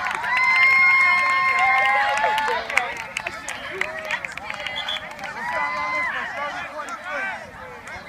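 Several young women's voices yelling and cheering on the field, with long, high held shouts in the first two seconds and again about six seconds in, over scattered sharp hand slaps and claps.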